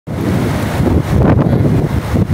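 Wind buffeting a phone's microphone outdoors: a loud, uneven low rush that rises and falls in gusts.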